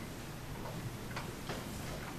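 Quiet room tone with a low steady hum and a few faint, sharp clicks at irregular intervals.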